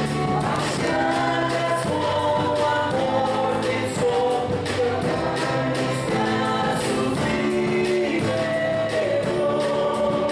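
A woman and a man singing a gospel hymn into microphones, backed by a small live band of guitars and a drum kit keeping a steady beat.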